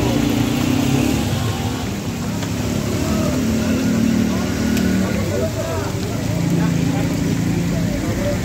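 Chapli kababs sizzling in a wide pan of deep, bubbling fat, a steady hiss. Under it runs a loud, steady low engine-like hum that shifts in pitch a few times, with people talking in the background.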